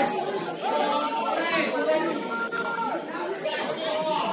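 Several indistinct voices chattering and calling over one another, with no words clear: the voices of people at a football match.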